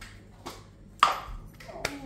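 A small jar being opened and its lid set down on a granite worktop: one sharp clink with a short ring about a second in, then a lighter click near the end.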